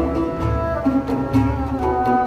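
Turkish Sufi ensemble music: an oud and a bowed string instrument play a melody over low frame drum beats about every three-quarters of a second.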